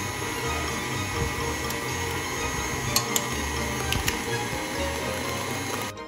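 KitchenAid Artisan stand mixer running steadily at speed as its beater works through thick cookie batter, with a few faint clicks. It cuts off near the end. Background music plays underneath.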